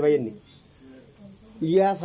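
Crickets chirping steadily in a rapid, high-pitched pulse. A man's voice speaking over it at the very start and again from about one and a half seconds in.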